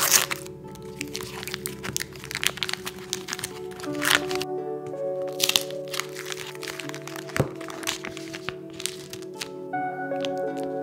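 Paper and foil cheese wrappers crinkling and crackling as they are peeled off soft cheese rounds, in dense irregular bursts, loudest right at the start and again about four and five and a half seconds in. Steady background music plays underneath.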